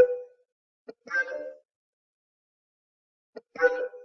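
Finale Notepad playing back a short synthesized note each time one is clicked onto the staff: three brief pitched tones, each just after a faint mouse click, at the start, about a second in and near the end.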